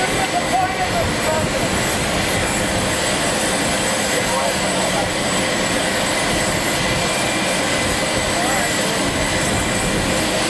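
Jet aircraft engines running, a loud steady rushing noise that holds at one level throughout.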